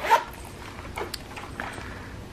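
Soft handling of a fabric zip wallet as it is opened and cash is slipped inside, with two light clicks about a second in. A brief high-pitched sound comes right at the start.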